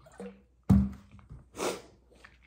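A person gulping water from a large plastic water jug to cool a mouth burning from scorpion-pepper heat. A sudden loud sound comes a little under a second in as he breaks off, and a heavy breath out follows near the end.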